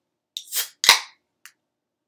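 Aluminium beer can being handled: a light click, a short high hiss, then one sharp crack about a second in, and a faint click after.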